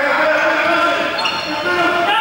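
Sports shoes squeaking on a polished sports hall floor as players run and turn, with several young people's voices shouting, echoing in the large hall.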